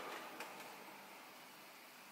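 Faint steady hiss of a small gas burner heating a Stirling hot air engine that is not yet running, with one light click about half a second in.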